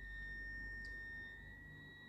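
Faint background noise: a steady high-pitched whine with a low hum beneath it.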